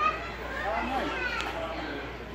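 Children's high voices chattering and calling out in the background.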